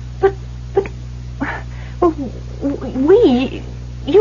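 A woman's distressed voice: a few short breathy catches, then a wavering, whimpering utterance near the end, over a steady low hum.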